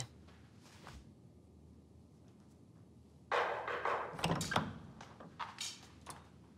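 A heavy wooden door opening with a sudden thunk about halfway through, followed by a few short knocks and clicks.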